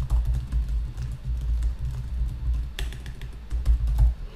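Typing on a laptop keyboard, a run of light key clicks, over low background music.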